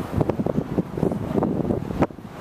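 Wind buffeting the microphone in irregular low gusts on the open deck of a moving tour boat.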